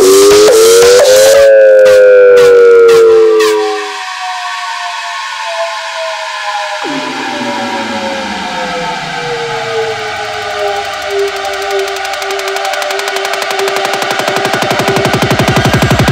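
Breakdown in an electronic breakcore/drum-and-bass track. A sustained synth tone rises in pitch, the drums drop out, and the tones then slide slowly downward. A deep falling sweep comes in about seven seconds in, and a pulse speeds up into a build near the end.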